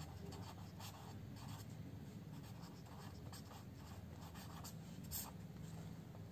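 A pen writing on paper: faint, short scratchy strokes as a word is written out.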